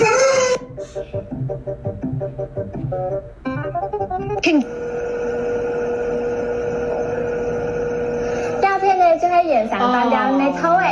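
Clip audio of speech and music: a short voice, about three seconds of quick plucked-string notes, a brief voice, then a steady one-note hum under hiss for about four seconds, and a voice again near the end.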